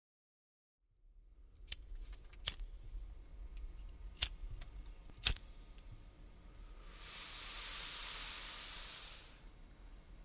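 Sound effects: four sharp clicks over a low hum, then a hiss of about two and a half seconds that swells and fades.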